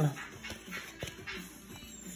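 Trading cards being handled and slid past one another by hand, with a couple of light clicks about half a second and a second in. Faint, short low tones sound in the background.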